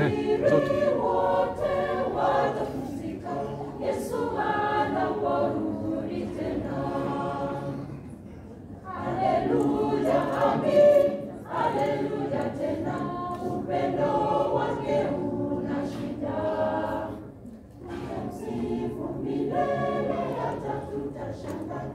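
Adventist church choir of women's and men's voices singing a cappella in full harmony. The sung phrases drop briefly about eight seconds in and again near the end.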